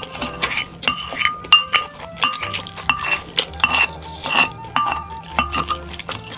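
A wooden spoon and chopsticks clink and scrape against a ceramic dish, scooping up fried rice: a quick, uneven run of clinks, each ringing briefly.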